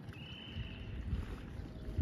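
Outdoor wind buffeting the microphone as a low, uneven rumble, with a thin high steady tone lasting under a second near the start.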